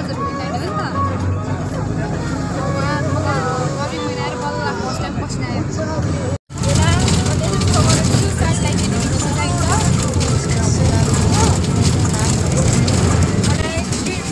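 Bus cabin noise: a steady engine and road rumble under background voices. The sound drops out abruptly about six and a half seconds in, and after that the rumble is louder.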